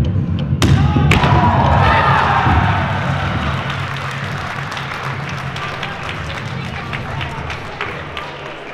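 A flying kick breaking a wooden board: a sharp crack about half a second in and a second thump just after, then voices cheering that fade away. Background music with a steady bass runs underneath and drops out near the end.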